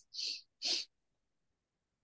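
Two short, breathy bursts of laughter within the first second.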